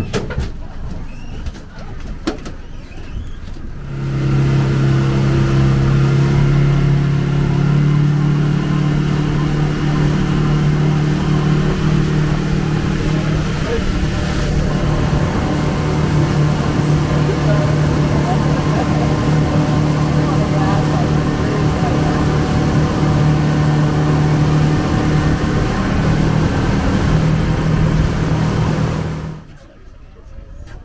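Tour boat's engine coming up to speed about four seconds in and running with a steady drone over wind and water rush, its pitch stepping up slightly a couple of times. It cuts back sharply just before the end.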